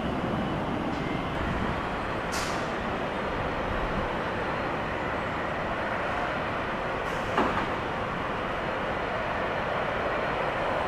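Steady rumble of jet engines running at low power on two military jets on the runway, heard from a distance. A short hiss comes about two seconds in and a sharp click about seven seconds in.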